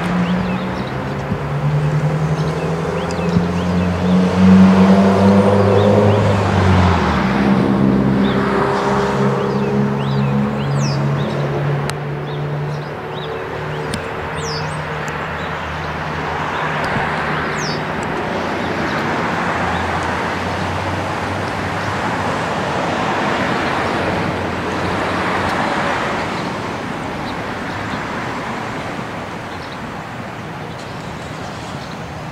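Road traffic passing one vehicle after another, each swelling and fading. Under it, a deep engine drone drops in pitch about seven seconds in and dies away in the second half.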